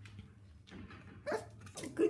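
A 7-week-old Havanese puppy gives two short barks in the second half, the first the louder.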